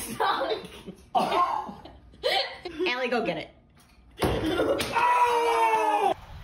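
Short excited vocal exclamations, then from about four seconds in a loud, long held shout of triumph from a man.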